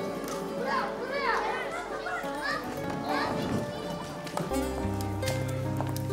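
Children shouting and calling to each other at play, over a background music score of held and plucked notes; a deep bass line joins the music about four and a half seconds in.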